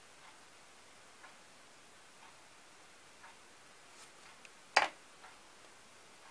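Faint, evenly spaced ticks about once a second, and near the end one sharp click as the small wooden figure is set down onto its thin plastic stand.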